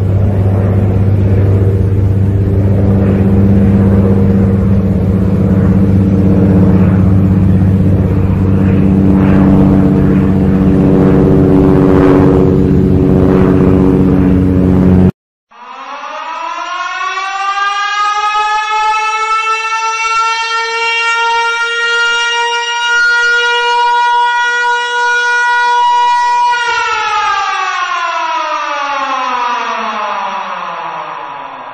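A steady, loud engine drone with a deep hum cuts off abruptly about halfway through. Then an air-raid siren winds up, holds a steady pitch for about ten seconds, and begins winding down near the end.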